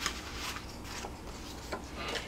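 Cardstock sheets handled and slid over one another on a table: faint paper rustling with a few light taps, over a low steady hum.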